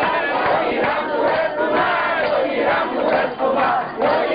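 A crowd of men shouting and chanting together, many voices overlapping without a break.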